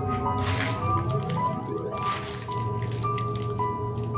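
Horror film score: a low drone under high held tones that change pitch, with two wet squelching sound effects about a second and a half apart.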